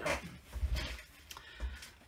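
A paper pad handled and shifted on a tabletop: a few short paper rustles and soft knocks against the table.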